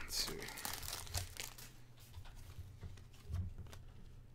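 Foil trading-card pack wrapper crinkling as it is torn and pulled apart, with a run of sharp crackles in the first second and a half, then quieter rustling as the cards are slid out.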